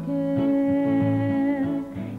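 Gospel song: a voice holds one long note over plucked guitar accompaniment. The note breaks off near the end.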